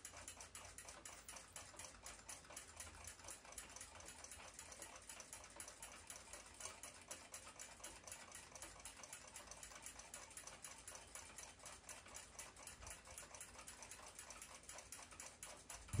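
Near silence with a faint, fast, even ticking, about five or six ticks a second.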